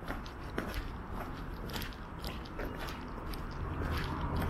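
Footsteps on a paved sidewalk, a gritty scuff about twice a second, over a low rumble of street traffic that grows louder near the end.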